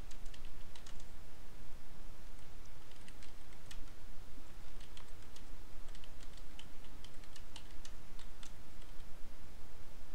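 Typing on a computer keyboard: irregular keystrokes in short runs, over a low steady hum.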